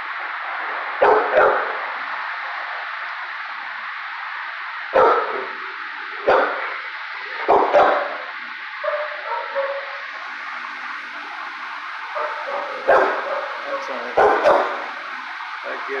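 Dogs barking in a shelter kennel block: about nine short, sharp barks, some single and some in quick pairs, at irregular intervals over a steady background hiss.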